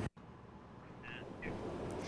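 Faint outdoor background noise after a sudden audio cut, slowly getting louder, with two short faint calls or squeaks about a second and a second and a half in.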